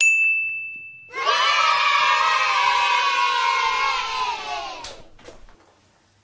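A single bright 'ding' sound effect, the cue for a light-bulb idea, dying away within a second. Then a group of children cheer a long 'yay', starting about a second in and fading out near the end.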